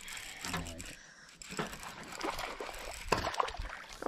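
Baitcasting reel being cranked as a hooked bass is played in to the boat, with water splashing near the end as the fish thrashes at the surface.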